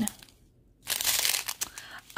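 Small clear plastic bags of diamond-painting drills crinkling as they are handled, starting about a second in after a brief quiet moment.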